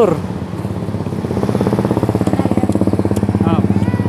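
A small engine idling steadily, its rapid firing pulses continuous and a little louder from about a second in. A short vocal "ah" comes near the end.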